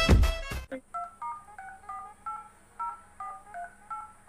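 Upbeat intro music cuts off within the first second, then a phone keypad sounds a quick run of about a dozen dialing tones, each a short two-note beep, as a phone number is dialed.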